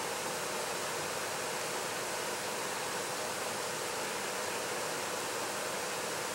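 Steady, even background hiss with a faint hum underneath. No distinct sound comes from the work itself.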